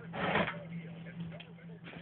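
A brief scrape of a small engine being shifted on a workbench by hand, heard early on, over a steady low hum.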